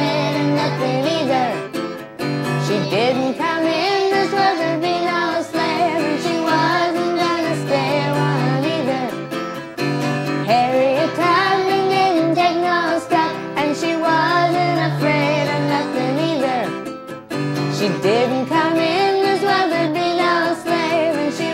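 A woman and a group of children singing together to a strummed acoustic guitar.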